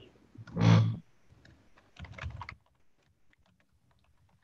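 Faint scattered keyboard tapping on a laptop, broken by a short loud noise about half a second in and a weaker clattering burst about two seconds in.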